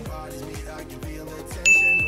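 A single bright ding sound effect about one and a half seconds in: a clear high tone that rings on, cueing the switch to the other side. Under it runs background music with a steady beat.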